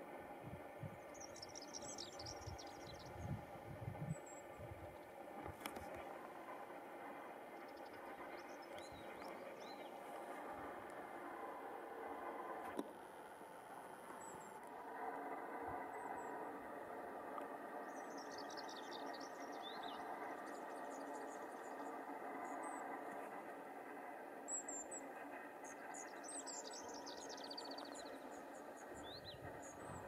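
Mallee emu-wren calling: faint, very high-pitched thin trills in short bursts, heard several times. Under them runs a steady faint hum, and a few low handling thumps come in the first few seconds.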